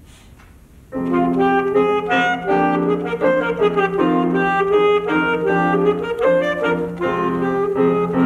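Alto saxophone coming in about a second in after a short quiet pause, then playing a quick passage of changing notes.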